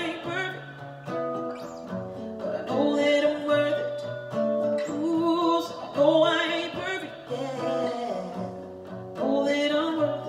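A woman singing over a strummed acoustic guitar, her sung phrases coming about every three seconds.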